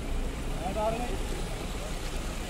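Indistinct voices of several people talking at a distance over a steady low rumble.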